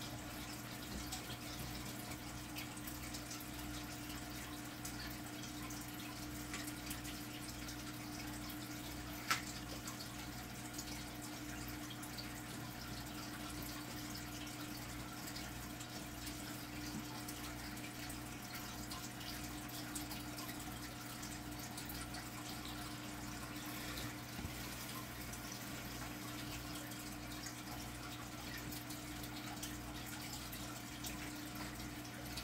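Aquarium water trickling and bubbling steadily over a low steady hum and a low regular pulse. A single sharp click about nine seconds in.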